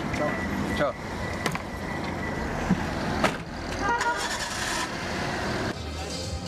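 Car cabin with a steady low engine hum, a repeating beep that stops about a second in, and several clicks and thumps as the passenger climbs out and the door shuts, the loudest about three seconds in. Music comes in near the end.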